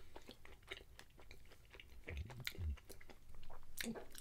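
Quiet mouth sounds of someone chewing a soft chocolate brownie, with small wet clicks and a couple of brief low sounds a little past halfway.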